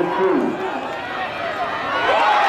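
Football game crowd noise, with a voice calling out over the general din of the stands.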